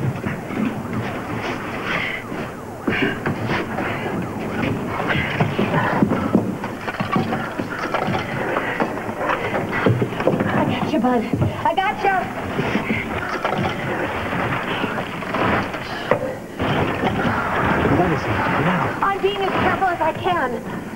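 Indistinct voices, not clear words, over a busy mix of short knocks and scrapes from rubble being moved by hand.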